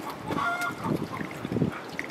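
A brief honking call from a farmyard bird about half a second in, with soft irregular handling and splashing noises from the cooking around it.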